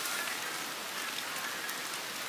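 Steady, even hiss of outdoor background noise, with no distinct events, in a rain-like texture.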